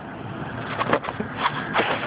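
Steady running noise of a rooftop packaged air-conditioning unit with its blower on, with a few short knocks and scrapes of handling about halfway through and near the end.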